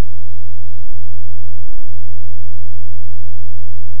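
Loud, steady low electrical hum with a faint high whine above it and no voice: mains-type hum on a phone-in line whose connection is failing.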